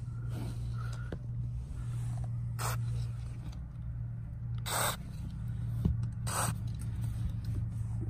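Short squirts from an aerosol can of Teflon dry lubricant sprayed through an extension straw into a sticking rear sliding window track: three brief hisses, the longest near the middle, over a steady low hum.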